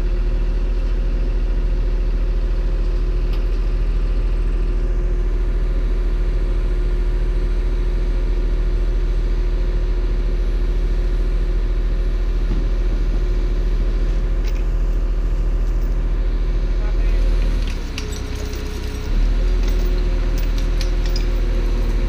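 Wheeled excavator's diesel engine running steadily at constant speed. The engine note drops briefly about three-quarters of the way through, then comes back, and a few sharp metallic clinks follow near the end.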